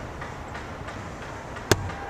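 Ice hockey play in an arena: a steady wash of rink noise from skating and the game, with one sharp, loud knock near the end as stick, puck or boards are struck.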